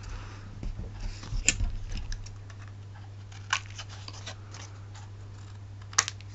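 Paper and card being handled on a craft table: light rustling and crackling, with two sharper clicks, one about a second and a half in and one about three and a half seconds in. A steady low hum runs underneath.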